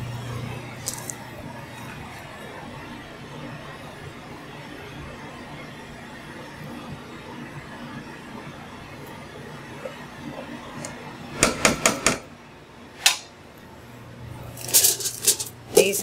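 Steady hum of commercial kitchen ventilation, then a quick run of sharp metal clinks about eleven seconds in, a single clink a second later, and more clatter near the end, as metal utensils and stainless steel pans are handled.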